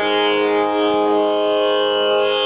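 Tanpura drone: a steady, unchanging sound of plucked strings with many overtones, holding the pitch for a Carnatic concert, with no voice, violin or drum over it.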